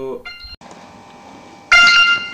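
Xiaomi Redmi 2 phone ringing with its Find Device alarm, set off remotely from Mi Cloud. The ringing is faint under a spoken word at the start, then comes in loud about 1.7 s in as a ring of several steady high tones.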